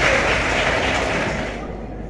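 Audience in a large hall applauding a correct answer, dying away near the end.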